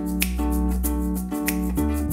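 Live-looped music: a nylon-string classical guitar picking notes over a held low bass part and a steady beat of sharp clicks.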